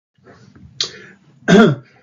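A person clearing their throat once, a short loud cough-like burst about a second and a half in, after softer throat sounds leading up to it.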